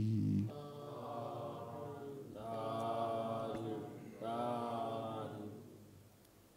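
Buddhist chanting: a voice chanting in three long, held phrases at a steady pitch, quieter than the talk around it.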